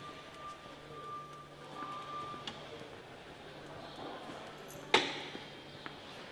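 Cargo warehouse room tone: a steady low hum with a faint high steady tone for the first couple of seconds, then one sharp knock about five seconds in that echoes briefly.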